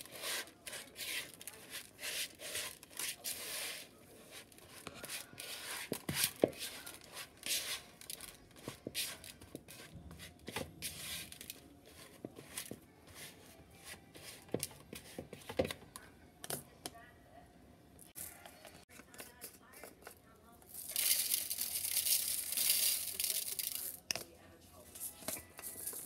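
Silicone spatula stirring and scraping thick cookie dough in a plastic mixing bowl, a run of small clicks, scrapes and sticky squelches. Near the end comes a few seconds of denser rustling hiss.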